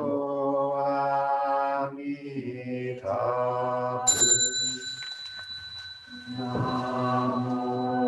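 Buddhist chanting by voices on long held notes, pausing briefly for breath. A bell is struck once about four seconds in and rings on under the chant.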